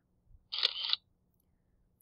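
A single short click about half a second in, a computer mouse or key press advancing the lecture slide, in an otherwise silent pause.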